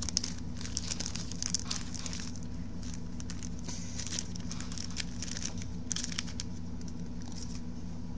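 Small clear plastic bag crinkling irregularly as fingers handle it, dying down near the end, over a steady low hum.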